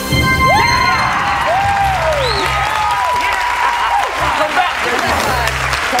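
Studio audience and family cheering and clapping with loud shouts and whoops, over game-show background music with a pulsing low beat.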